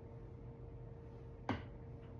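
Quiet room tone with a faint steady hum, broken once about one and a half seconds in by a single short, sharp click.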